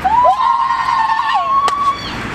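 A high, siren-like tone that rises slightly, then holds steady for nearly two seconds. A second, lower tone curves beneath it for about the first second, and a sharp click comes near the end.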